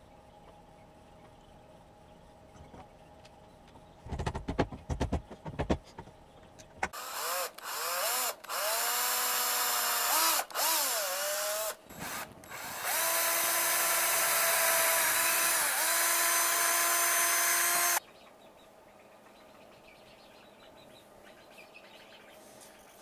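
Cordless drill boring into a hardwood board: the motor starts and stops in short runs with its whine sliding up and down as the trigger is worked, then runs steadily at speed for about five seconds before cutting off suddenly. A few knocks come just before the drilling starts.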